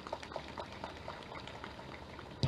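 Faint, scattered hand clapping from an audience: irregular single claps, several a second, thinning out toward the end.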